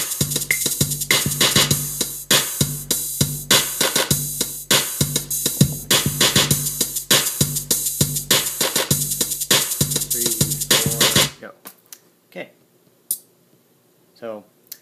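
Looping electronic drum pattern from the iMaschine drum-machine app on an iPad: evenly repeating hits over a sustained low bass note. It cuts off suddenly about eleven seconds in, leaving only a few faint short sounds.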